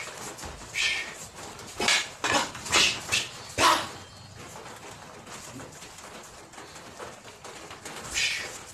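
Training sticks striking each other in a partner stick-fighting drill: a quick run of about seven sharp clacks in the first half, then a lull with only a few faint knocks.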